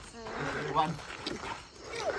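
People's voices calling out over an outdoor game, with a short, higher-pitched call about a second in.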